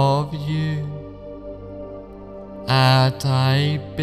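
Slow new-age background music: long held chant-like vocal notes over a steady drone, one phrase at the start and another about three seconds in.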